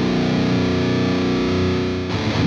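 Heavily distorted electric guitar, a Jackson KVMG Pro Series tuned to drop B, played through the red channel of an EVH 5150III LBX 15-watt head into a miked cabinet. After a burst of chugging riffs, a chord is held and left ringing with steady sustain.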